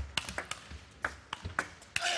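Table tennis ball clicking off the rackets and the table in a fast rally, about a dozen sharp ticks in two seconds, mixed with a few dull low thumps.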